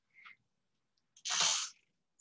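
A person's short, sharp breath noise, a sniff or quick breath, about a second and a half in, after a faint soft click.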